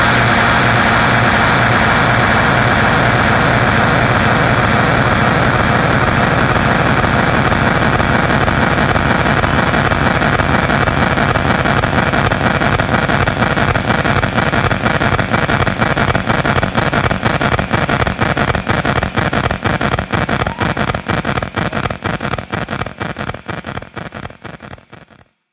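Sustained wall of distorted guitar-amplifier noise ringing out after a heavy rock song ends, steady at first, then breaking into a rapid flutter that grows choppier and fades away at the very end.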